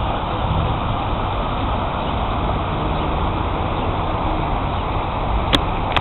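Steady noise of water running and splashing down a stepped park fountain, over a low rumble of city traffic, with one brief click about five and a half seconds in.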